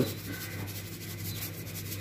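Faint rubbing and scraping of a metal spoon against boiled potatoes in a steel pan as salt is added.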